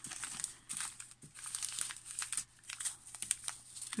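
Small clear plastic zip bags of embroidery beads crinkling and rustling as hands pick them up and sort through them, in a run of short, irregular crackles.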